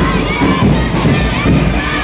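A crowd of schoolchildren shouting together, with many high voices overlapping steadily.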